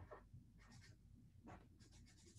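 Faint scratching of a pen writing on paper: a few short strokes.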